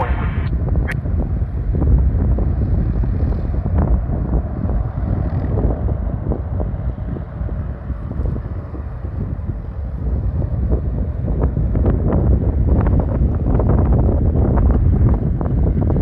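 Wind buffeting the microphone: a loud, gusty low rumble that eases off briefly in the middle and picks up again in the later part.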